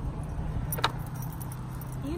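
A dog lead's metal clip and harness fittings jingling lightly as a puppy walks on the lead, with one sharp click a little before the middle, over a steady low outdoor rumble.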